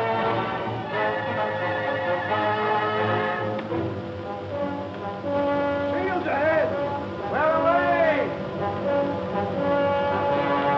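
Orchestral film score with held brass chords. A man's voice rings out twice over it in long calls rising and falling in pitch, about six and seven and a half seconds in.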